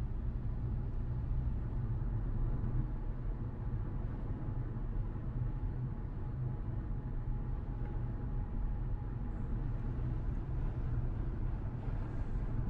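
Steady low rumble of a car being driven, heard from inside the cabin: road and engine noise.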